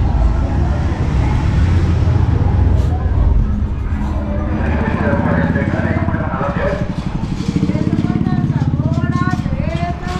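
A bus engine rumbling close by, fading about four seconds in; then street voices and a motorcycle engine running at low speed.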